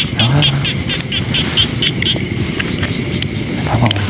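A calling insect chirping rapidly and high, about four chirps a second, stopping about two seconds in, over a steady low rumble.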